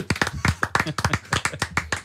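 Hands clapping in a quick, steady run of sharp claps, several a second, growing fainter near the end.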